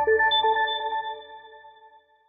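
Closing music with a few held notes that fade away through the second half.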